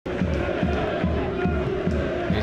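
Football stadium crowd noise, with a low beat repeating about two and a half times a second.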